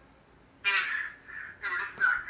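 A caller's voice coming through a mobile phone's earpiece, tinny and thin, starting about half a second in and breaking into short stretches.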